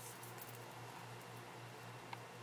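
Quiet room tone with a low steady hum, and faint rustling as fingers pull beading thread through a seed bead.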